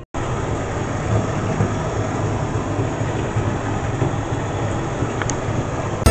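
Bath tap running into a tub: a steady, loud rush of water that starts suddenly after a brief silence.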